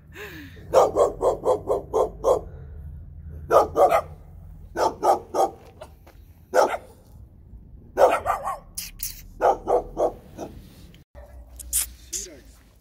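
Dog barking in quick runs of short barks, bursts of two to six barks with short pauses between, stopping abruptly just before the end.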